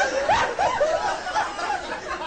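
A person laughing in quick repeated pulses, about four a second, that fade out near the end.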